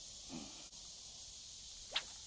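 Faint, steady outdoor insect chorus, with a brief low sound about a third of a second in and a short rising sound near the end.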